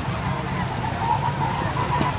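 Go-kart engines running, a steady low hum with a faint whine held at one pitch.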